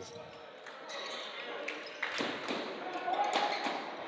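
A basketball bouncing on a hardwood gym court, with the voices of players and spectators in the gymnasium. Sharp knocks start about halfway through, over a steady background of crowd and room noise.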